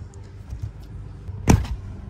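A plastic retaining clip on the center console side panel of a Tesla Model Y pops free with one sharp snap about one and a half seconds in, releasing the panel; before it, faint rubbing of a hand working behind the trim.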